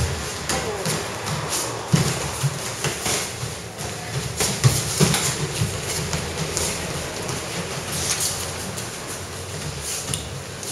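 Boxing footwork shuffling and stepping on the ring canvas, with light taps of padded boxing gloves during light-contact sparring: an irregular clatter of scuffs and knocks, the sharpest about two seconds in and around five seconds.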